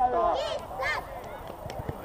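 Several short, high-pitched shouts from young players' voices in the first second, quieter calls after.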